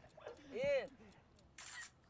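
A man's strained shout about half a second in, then a camera shutter click near the end as the photo of the pose is taken.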